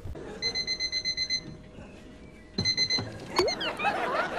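Electronic alarm clock beeping rapidly in a high tone, stopping for about a second and starting again, followed by a few short squeaky chirps near the end.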